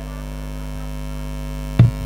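Steady electrical hum of a live stage sound system in a gap in the music. One heavy drum beat lands near the end.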